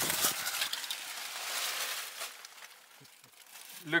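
Crackly rustling and scraping handling noise as the camera is passed from hand to hand and moved about, fading out about two and a half seconds in.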